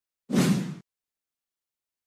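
A single whoosh transition sound effect, about half a second long, marking the change from one news story to the next.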